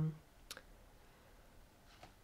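Quiet room tone with a single short click about half a second in, after a voice trails off at the very start.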